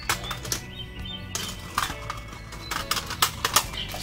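Quiet background music under scattered sharp clicks and taps from empty metal watercolour tins being handled.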